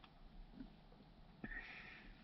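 Near silence, with a faint click about one and a half seconds in, followed by a short sniff.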